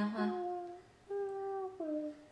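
Humming: a few long held notes of a tune, a lower and a higher voice together at the start, then after a short pause a single higher voice holding one note and dropping to a lower one near the end.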